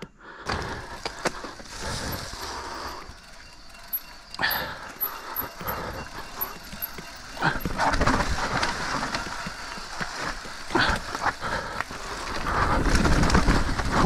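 Mountain bike riding down a dirt singletrack: knobby tyres rolling and skidding over dirt, leaf litter and roots, with the bike rattling and knocking over bumps, louder and rougher from about halfway through.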